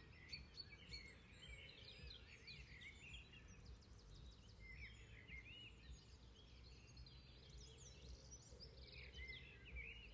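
Faint birdsong: bouts of quick chirps and warbling phrases, over a low, steady background rumble.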